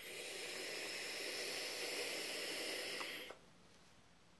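A long drag of about three seconds on a sub-ohm vape. Air is drawn through the tank's Eleaf EC coil head as it fires, making a steady hiss that cuts off sharply when the inhale ends.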